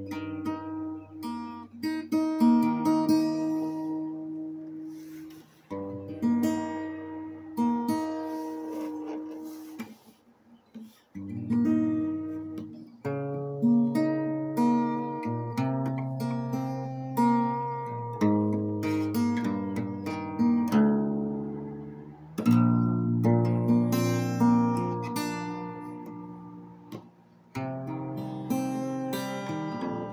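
Solo acoustic guitar played slowly, plucked and strummed chords ringing out and fading. The playing stops briefly about ten seconds in, then picks up again.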